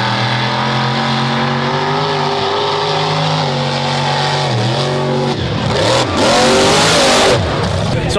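Mud truck's engine held at high revs as it drives out of the mud pit, its pitch shifting and dipping briefly about halfway through. Near the end a loud rushing noise covers it for about a second and a half.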